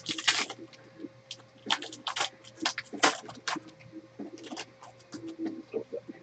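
Foil wrapper of a trading-card pack crinkling as it is torn open and handled by hand, in irregular crackles.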